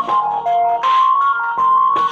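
Instrumental music: an electronic keyboard plays a melody of short held notes, one after another, with hissy cymbal-like washes above.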